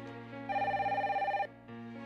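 A home cordless telephone ringing electronically: one warbling ring about a second long, starting about half a second in, over background music.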